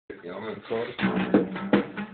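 A man singing to a strummed acoustic guitar, with three hard strums in the second half.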